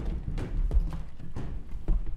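Footsteps of a group of children walking across a wooden floor: a few dull, irregular thumps with shuffling between them.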